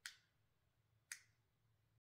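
Near silence: room tone with two short, faint clicks, one at the very start and another about a second later.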